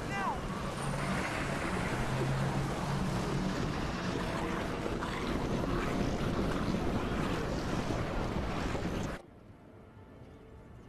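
Loud, steady rumble and rush of a vehicle driving, with a low engine drone in the first few seconds. The noise cuts off abruptly about nine seconds in.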